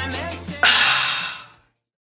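Music tailing off, then about half a second in a breathy, satisfied 'ahh' exhale, as after a refreshing drink, which fades out within about a second.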